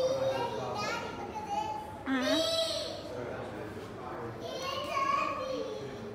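A young child's voice calling out and chattering without clear words, with a loud high-pitched squeal about two seconds in.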